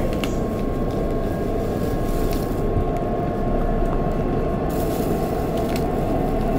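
Inside a Seoul Metro Shinbundang Line train running between stations: a steady rumble of wheels on rail, with a thin steady whine running through it.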